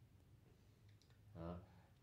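Near silence: room tone, with a few faint clicks about a second in and a short murmur of a man's voice about a second and a half in.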